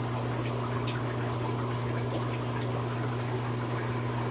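Aquarium pump running with a steady low hum, over the even wash of moving water.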